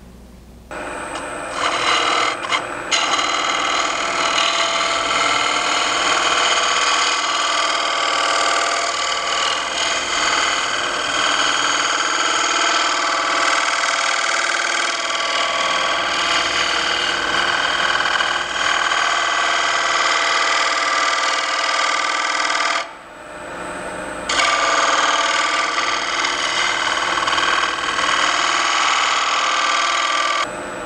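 Spindle gouge cutting decorative beads into the side grain of a wooden bowl spinning on a wood lathe: a loud, steady cutting noise with several ringing tones through it. It starts about a second in, stutters briefly, runs on, and breaks off for about a second and a half about three-quarters of the way through before the cut resumes.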